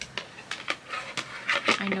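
Plastic plant pot being handled, giving a series of short knocks and clicks.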